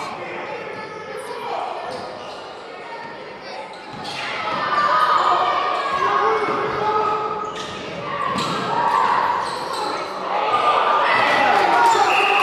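A basketball bouncing on a gymnasium's hardwood court, with players and spectators talking and calling out.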